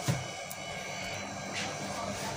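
Cloth being handled and moved about, with one short flap or knock right at the start and a few fainter rustles after it, over a faint steady hum.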